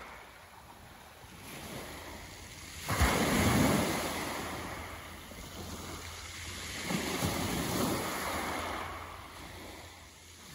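Sea waves washing in on a beach, one breaking with a sudden rush about three seconds in and another swelling in around seven seconds.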